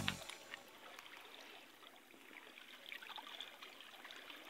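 Faint water trickling and lapping among rocks at the water's edge, a low steady wash with a few small ticks.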